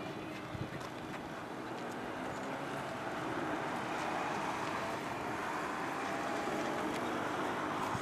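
Jet noise from the Airbus A380's four turbofan engines as the airliner flies in toward the listener: a steady rushing sound with a faint drifting tone, growing gradually louder from about three seconds in.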